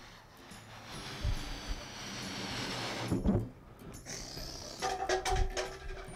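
Background music under the rushing hiss of air through a rubber balloon, with a few light knocks.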